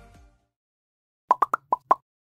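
Background music fading out, then near the end a quick run of five short, bubbly pops, a logo-sting sound effect.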